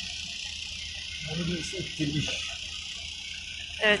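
A quiet, low murmured voice about a second in, over a steady high-pitched hiss that runs throughout.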